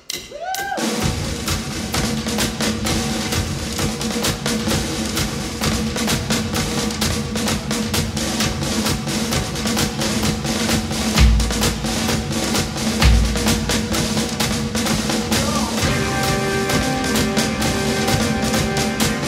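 Live rock band playing a song's opening: a drum kit beating busily over a steady held drone note, with two heavy low hits near the middle. More pitched instrument parts join near the end.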